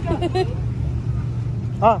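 Steady low rumble of a car engine running as the car moves slowly across sand.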